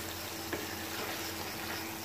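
Potatoes and aubergine in a thick tomato masala frying steadily over a medium flame while a wooden spoon stirs them round the pan.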